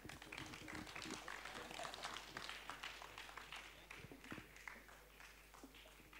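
Audience applause, faint and scattered, thinning out gradually.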